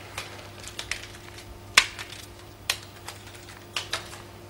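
Scattered light crackles and ticks from crumpled paper slips being let go from the hands and dropping to the floor, the sharpest about two seconds in, over a low steady hum.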